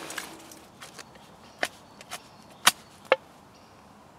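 Dry silver birch sticks clacking against each other and the steel wall of a small wood-burning stove as they are hand-packed in: a few short, sharp wooden knocks spread across two seconds.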